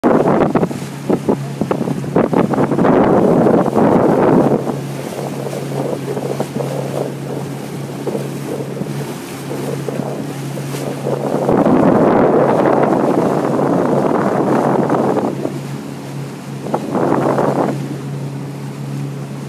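A boat motor running with a steady low hum throughout. Loud gusts of wind buffet the microphone over the first four seconds, again from about twelve to fifteen seconds, and briefly near the end.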